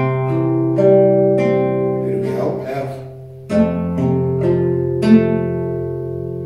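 Nylon-string classical guitar fingerpicked in a slow arpeggio pattern: a bass note plucked by the thumb, then single treble notes, all left ringing. A second chord starts the same way about three and a half seconds in.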